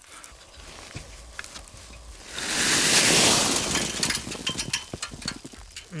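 Handling noise on dry grass and straw as the camera is set down and an old box spring is lifted off the ground: scattered knocks and crackles, with a loud rustling scrape of about two seconds in the middle.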